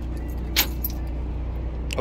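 Keys jingling twice in short sharp clinks as the engine compartment door they hang from is handled, over a steady low hum.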